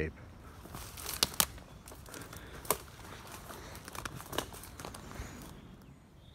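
Footsteps through dry dead undergrowth, with twigs and stalks crackling and snapping underfoot in several sharp cracks, the loudest a little over a second in.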